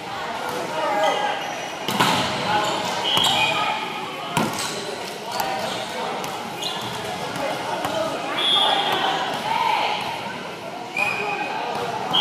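Volleyball thudding on a gym's hardwood floor a couple of times, with short high sneaker squeaks on the hardwood, all echoing in a large hall over players' background chatter.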